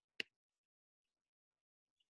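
A single sharp click, otherwise near silence.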